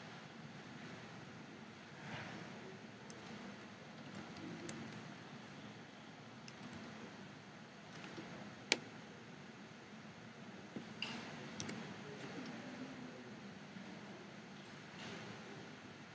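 Faint room tone with a few soft clicks from a computer mouse and keyboard, one sharper click about nine seconds in.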